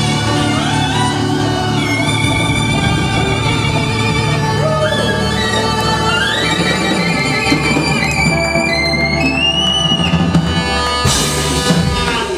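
Live rock band playing a slow ballad: drums, bass and electric guitars under a lead line of sliding, bending notes. A crash near the end marks the song finishing.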